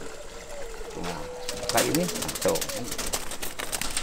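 A dove cooing, one drawn-out note starting about a second in and a shorter one after it, over a run of quick light clicks.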